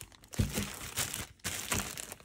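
Plastic packaging of a bag of frozen burger patties crinkling as it is handled, in a few irregular rustles, with a low knock about half a second in.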